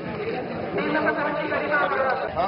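People talking: several voices in conversation, with no other distinct sound.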